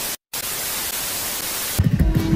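Television static sound effect, a steady hiss that starts just after a brief dropout. Music cuts back in near the end.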